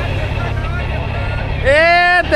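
Steady low rumble of a moving vehicle's engine and road noise, heard while riding in the back of the vehicle, with faint voices. A loud voice breaks in near the end.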